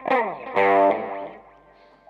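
Electric guitar played through effects: a sharp start with notes falling in pitch, then a loud chord about half a second in that rings and fades away by about a second and a half.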